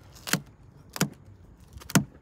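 Three sharp clicks, the last the loudest, as fingers press a plastic VW badge backed with 3M adhesive tape onto the van's tailgate: the tape and badge crackling as it beds down.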